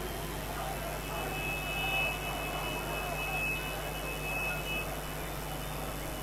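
Distant city street ambience with a steady electrical hum underneath; a thin, steady high tone sounds from about a second and a half in until near the end.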